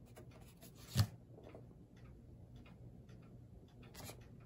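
A single sharp plastic click about a second in, as the boombox's function slide switch is moved to the tape setting, then a few faint ticks of handling.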